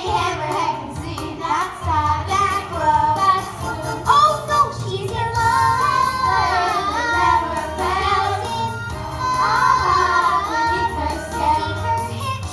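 Children singing a musical-theatre song together over a recorded accompaniment with a steady bass line.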